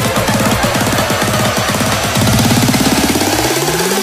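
Electronic dance music with a fast, pulsing beat; in the second half a rising sweep climbs steadily in pitch, building up to the next section.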